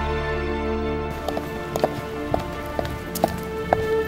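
Slow background music of held notes. From about a second in, footsteps on a pavement come in at a walking pace, about two steps a second.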